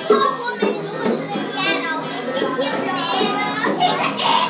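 Music playing with children's voices shouting and singing over it. A high child's voice is held, wavering, through the middle.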